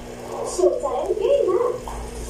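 A person's voice making wordless sounds, its pitch bending up and down.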